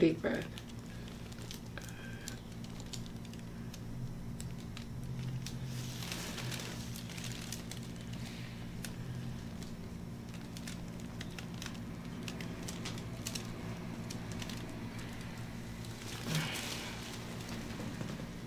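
Faint rubbing and crinkling of disposable-gloved hands massaging oiled skin, with scattered small clicks, over a steady low hum of room tone.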